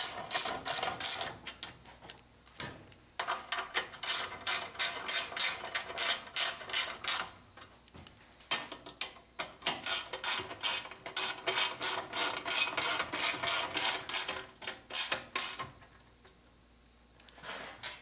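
Hand socket ratchet clicking in quick runs as bolts on a small engine's starter shroud are tightened. There is a short pause about two seconds in, and the clicking stops about two seconds before the end.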